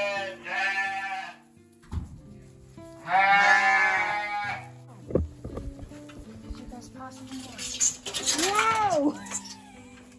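Sheep bleating: a pair of long, wavering bleats at the start and another about three seconds in, with a shorter rising-and-falling call near the end. Background guitar music runs underneath.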